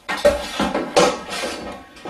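A cordless drill and its metal degasser stirring rod being set down on a kitchen worktop: several clattering knocks over the first second and a half, some ringing briefly.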